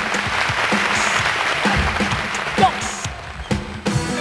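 Studio audience applauding, with the band's music starting up underneath; the music comes through clearly at the very end.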